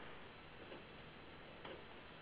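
Near silence: faint steady hiss of the recording line, with a couple of faint ticks.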